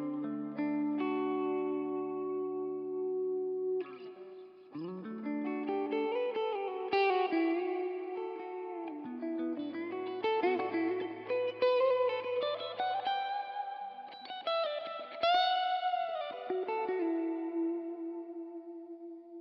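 Gibson ES-339 semi-hollow electric guitar played through a One Control Prussian Blue Reverb pedal into a Marshall Bluesbreaker combo amp. Held chords ring for the first few seconds, then a lead line of single notes with string bends follows, each note trailing off in reverb.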